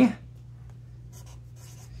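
Sharpie felt-tip marker writing on paper, faint scratchy strokes in the second half, over a steady low hum.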